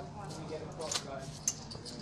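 Poker chips clicking against each other in brief sharp clicks as players handle their stacks, over low voices.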